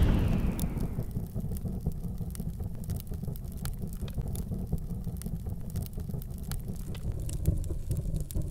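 Cinematic logo sound effect: a deep boom dying away over the first second, then a low rumble with scattered crackles.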